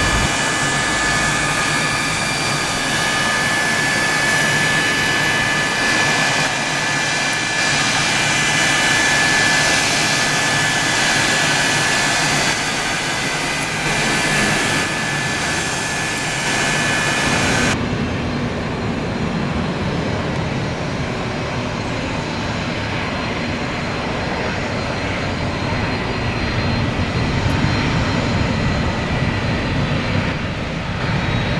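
Jet airliner engines: a steady whine with several high tones while an airliner comes in and lands. About two-thirds of the way through the sound changes abruptly to a lower, broader jet engine rumble.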